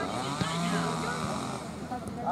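A small engine running and revving, its pitch rising and falling over the first second and a half, with voices around it.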